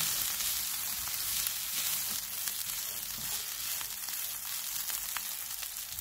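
Shredded chicken, capsicum, corn and onion sizzling in oil in a nonstick frying pan while being stirred with a spatula: a steady frying hiss with a few faint clicks.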